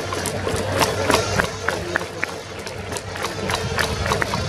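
Stadium cheering music playing while the crowd in the stands claps along, with many sharp, uneven claps.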